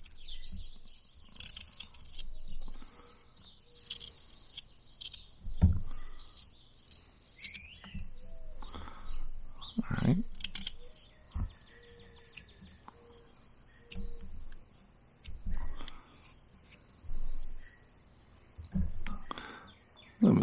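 Small Occ Tools carving knife slicing and paring wood from a bark-covered stick in short, irregular scraping cuts, with a few dull knocks as the stick is handled. Small birds chirp in the background.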